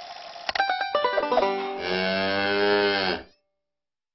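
A quick run of plucked banjo-like notes stepping down in pitch, then a cow mooing once for about a second and a half, bending slightly down at the end: a logo sound effect.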